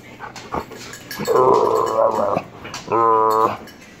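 A dog vocalizing close up while being petted: a rough, grumbling sound lasting about a second, then a shorter steady-pitched call.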